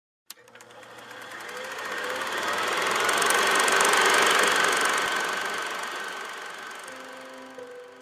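Film projector running with a rapid, even clatter, swelling in loudness to a peak about halfway and fading away, after a sharp click at the very start.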